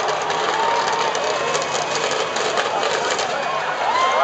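Demolition derby din: motorhome engines running amid steady crowd noise, with a patch of rapid rattling clatter near the middle and a few shouts from the stands.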